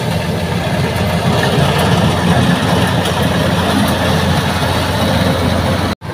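Rice combine harvester running steadily as it drives through and cuts a field of ripe rice: a loud, even engine drone. It breaks off sharply at the very end.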